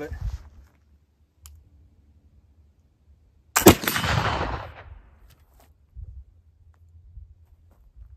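A single shot from a .45-calibre Kibler Southern Mountain flintlock rifle about three and a half seconds in, loaded with a heavy 75-grain charge of homemade black powder made from hay charcoal. The report is sharp and dies away over about a second.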